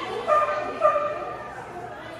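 Dog barking twice while running an agility course: two short, high-pitched barks about half a second apart, each dipping slightly in pitch at its start.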